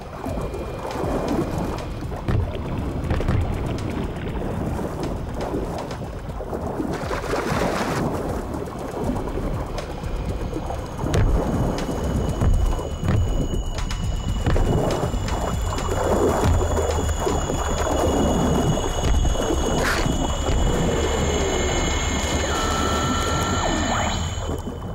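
Water churned by thrashing bull sharks, heard underwater as a low rumbling wash with scattered knocks. From about ten seconds in, a few steady high tones sound over it.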